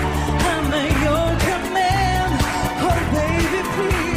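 Pop music performed live: a woman singing a wavering melody over a backing track with a steady beat and heavy bass.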